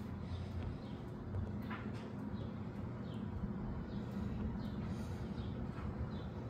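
Faint, short, high chirps falling in pitch, repeated every second or so, from a bird, over a steady low rumble.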